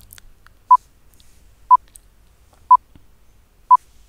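Quiz countdown timer beeping: four short, identical beeps of one steady pitch, one each second, counting down the answer time.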